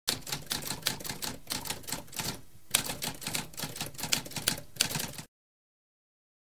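Typewriter keys clacking in a rapid run of strikes, with a short break about two and a half seconds in, then stopping abruptly a little after five seconds.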